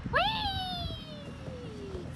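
A young child's long squeal that jumps up at the start and then falls slowly in pitch for almost two seconds, as the child slides down a plastic playground slide.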